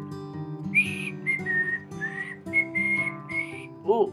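Someone whistling a short tune of about six or seven breathy notes over strummed acoustic guitar music, starting about a second in.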